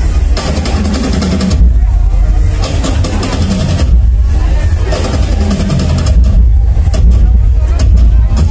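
Loud DJ dance remix through a large roadshow sound system. Heavy bass runs throughout with a voice over it, and the treble cuts away for a moment several times.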